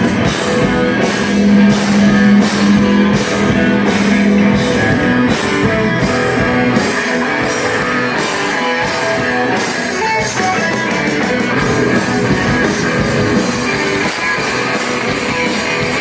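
Live rock band playing loudly: electric guitars, bass guitar and a drum kit keeping a steady beat, with a low note held for about three seconds starting about a second and a half in.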